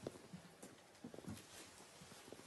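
Faint footsteps and shuffling on a hard floor: a few soft, irregular knocks, with a small cluster just past halfway, as bodies move and a person is lifted from the floor.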